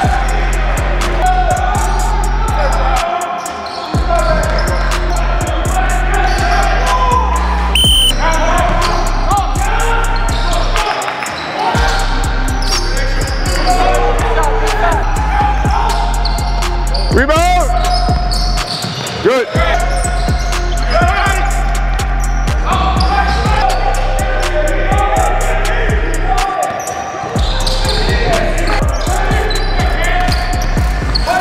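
Basketballs bouncing on a hardwood gym floor, with sneaker squeaks and players' voices. Under it runs a music track with a steady bass that drops out briefly a few times.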